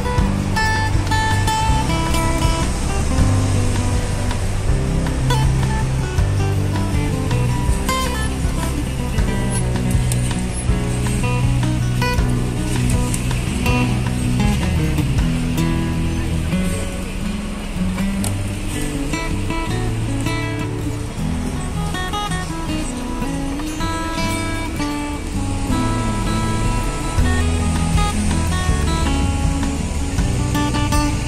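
Background music with plucked guitar notes, playing steadily throughout.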